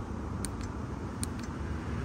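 Two faint sharp clicks, about half a second and a second and a quarter in, from a thumb pressing the mode button on the plastic shell of a Torras Coolify 2S neck air conditioner as it steps through its fan settings. The clicks sit over a steady low background hum.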